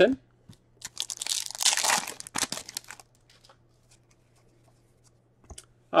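Foil wrapper of a hockey card pack tearing and crinkling for about two seconds, starting about a second in. After that, only a few faint ticks of cards being handled.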